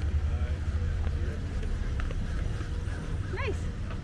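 Low, fluctuating rumble of wind and handling noise on a handheld camera's microphone outdoors, with a single sharp click about two seconds in.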